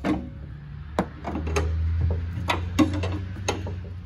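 Pry bar levering a lower control arm against its torn rubber bushing, with about half a dozen irregular metallic clicks and knocks over a low steady hum. The arm moving this freely is the sign of a badly torn control arm bushing.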